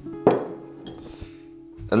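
Background acoustic guitar music: a plucked chord about a quarter-second in that rings on and slowly fades, with speech coming back near the end.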